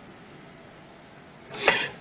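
Faint steady hiss, then near the end a short rushing intake of breath from the narrator just before he speaks.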